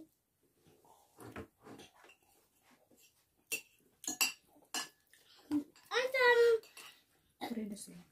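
Metal spoon and fork scraping and clinking against a plate as food is scooped up, with a few sharp clinks about halfway through. A short vocal sound comes about six seconds in, and a few words near the end.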